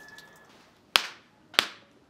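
Two sharp hand claps about two-thirds of a second apart: the ritual claps (kashiwade) of Shinto shrine worship.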